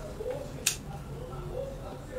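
A single sharp click about two-thirds of a second in, a hand-held lighter being struck to light a freshly rolled joint, over faint room noise.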